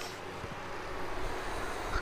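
Steady background noise: a low hum with an even hiss, the room tone of the recording.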